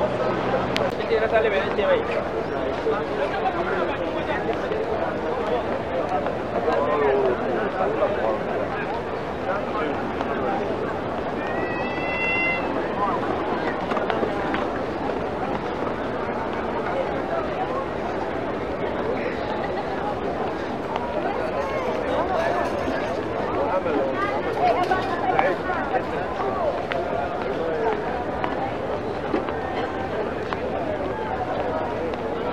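Crowd hubbub: many people talking at once around the microphone, a steady babble with no single voice clear. A brief high chirp cuts through it once, partway through.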